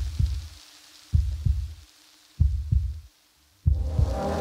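Heartbeat-like thumps in suspense background music: four pairs of deep thumps, one pair about every 1.2 seconds, over a faint held tone.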